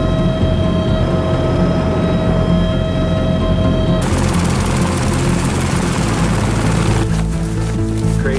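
Background music with sustained tones plays throughout. About halfway in, the noise of a helicopter running with its rotor turning cuts in on top of it and stops abruptly about three seconds later.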